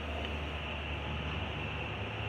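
Distant BNSF freight train passing: a steady low drone under an even noisy hiss.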